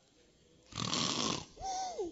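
A man imitating snoring: one loud, noisy snore lasting about a second, then a shorter, higher-pitched sound that rises and falls.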